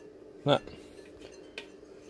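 Faint, light metallic clicks of small machine screws and a tool being handled against the sheet-metal case of a solar charge controller, with a sharp click about one and a half seconds in.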